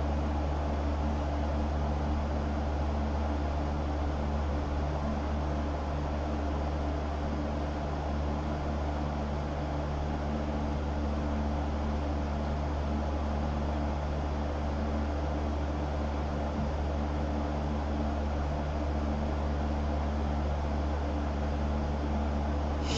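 Steady low hum with an even hiss over it, unchanging throughout: background room noise from a running fan or similar appliance.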